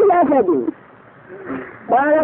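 A drawn-out voice sound that slides down in pitch for about half a second, then a pause with a faint short sound in the middle; voice starts again just before the end.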